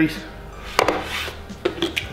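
Small hard plastic camera gear being handled and set down on a wooden box top: a sharp knock just before a second in, and lighter clicks near the end.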